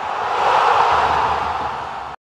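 Animated intro sound effect: a rushing swell of noise that builds to a peak about halfway through and then eases off.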